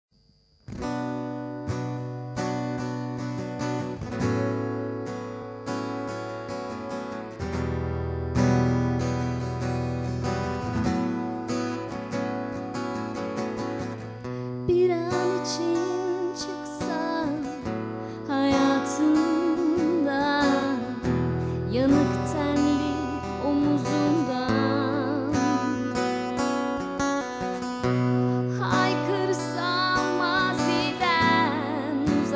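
Acoustic guitar playing a song's intro, coming in just under a second in; about halfway through, a woman's voice joins it, singing with vibrato.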